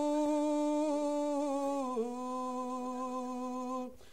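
A voice holding one long chanted note of a Vedic mantra. The pitch stays steady, dips briefly about halfway through, and the note breaks off just before the end for a breath.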